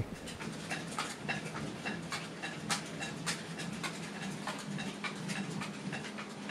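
Buckwheat flour mill machinery running: a steady low hum with irregular sharp clicks and taps, a few each second.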